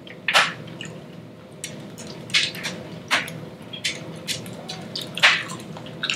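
People chewing and smacking their lips while eating fried chicken: a scattering of short, wet clicks, the loudest about a third of a second in and again near the end.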